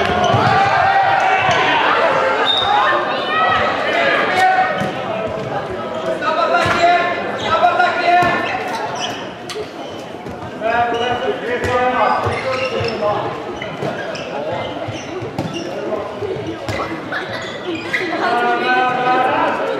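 A handball bouncing and striking the hard floor of a sports hall at intervals, with voices calling out across the echoing hall.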